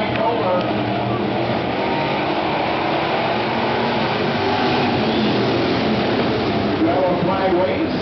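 Pure Stock race cars racing together on a dirt oval, the engines of the pack blending into a loud, steady drone, with voices mixed in.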